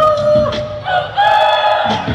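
Hip-hop song performed live: a voice holds a long sung "oh", then moves to a higher held note about a second in, with the bass and drums dropped out beneath it.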